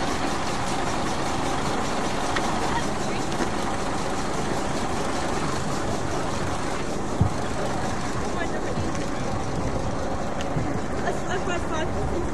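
Steady outdoor background noise with people's voices in it and one knock about seven seconds in.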